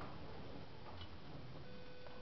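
Quiet room ambience with a few faint ticks. A faint steady hum of several tones comes in near the end.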